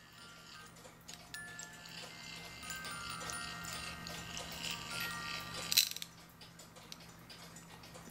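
Cuckoo clock cylinder music box playing faint, sparse plucked notes as the pinned brass cylinder turns against the steel comb, whose teeth are just barely catching the pins. A sharp click comes about six seconds in, and the notes die away after it.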